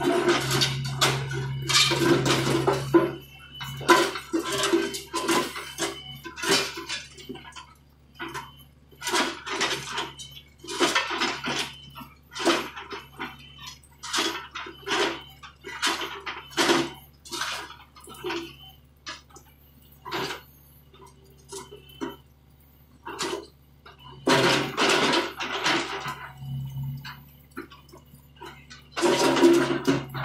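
John Deere 50D compact excavator's diesel engine running with a steady hum, while its bucket scrapes and clatters through broken concrete and rock in repeated irregular bursts, busiest near the start and again near the end.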